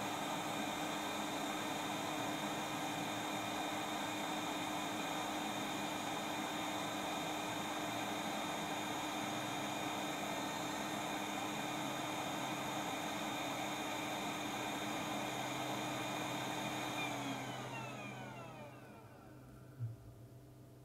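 Hot air rework station blowing air steadily while reflowing solder joints on a circuit board. Near the end the blower spins down, its pitch falling until it stops.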